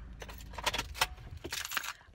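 Keys jangling: a quick, irregular run of small metallic clicks and rattles.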